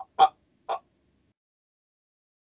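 A man's voice saying two short hesitant syllables, "I, I," in the first second, then dead silence.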